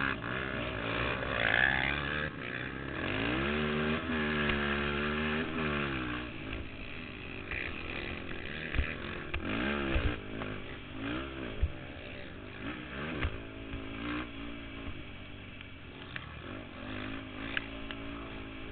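Racing ATV engine heard from on board, revving up and down through the gears: one long pull from about three seconds in, then a string of shorter rises and falls. A few sharp knocks come through over the rough track.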